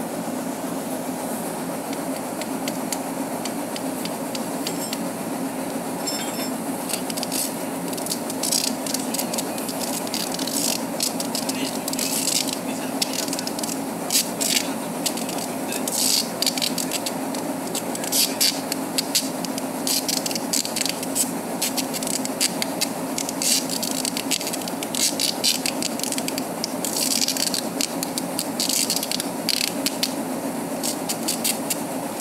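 Steady hum of a ship's deck machinery. From a few seconds in, it is overlaid by irregular clicking, scraping and rattling as the lifeboat davit's steel wire rope is handled.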